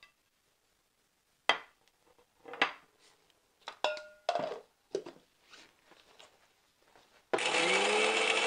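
Whole roasted spices tipped into a stainless steel mixer-grinder jar and the lid fitted, a few light knocks and clinks, one with a short metallic ring. Near the end the electric mixer grinder switches on suddenly and runs loud, its motor pitch rising slightly as it gets up to speed.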